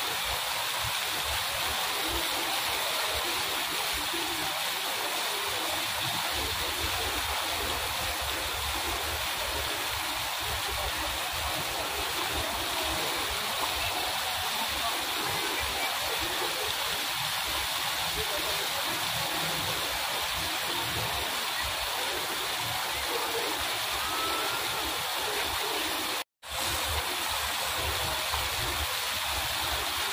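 Fountain jets falling as spray onto a pool: a steady splashing rush of water, broken by a brief total dropout about 26 seconds in.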